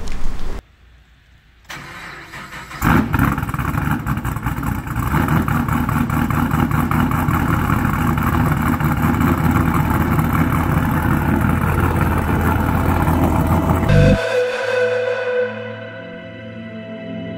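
BMW M2 Competition's S55 twin-turbo inline-six, fitted with catless downpipes and aftermarket exhaust tips, starting up suddenly about three seconds in and then running steadily. The engine sound cuts off abruptly near the end and soft ambient music takes over.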